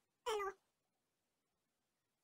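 A single short word, "elo" (hi), spoken in a high-pitched voice, lasting about a quarter of a second.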